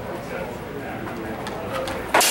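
Low murmur of voices echoing in a large hall, with a few faint light ticks near the end.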